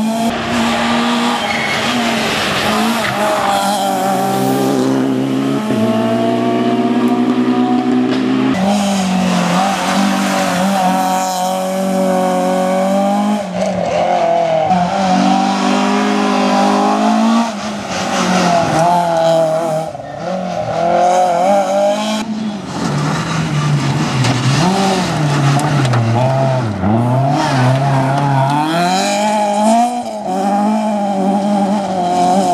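Citroën C2 rally car's engine revving hard on a gravel stage, its pitch climbing and dropping again and again through gear changes and lifts off the throttle, with tyres working on the loose gravel. The sound changes abruptly several times as separate passes follow one another.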